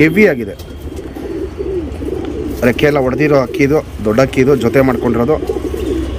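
Domestic pigeons cooing, a run of low, warbling coos mostly in the second half, with a man's voice mixed in.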